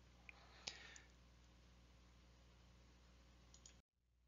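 Near silence with two faint computer-mouse clicks in the first second, the second one louder.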